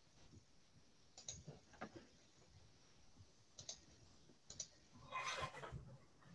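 Near silence broken by faint clicks, several in quick pairs, then a short louder noisy burst near the end.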